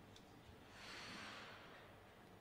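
Near silence, broken by a single soft breath, an exhale about a second long, near the middle.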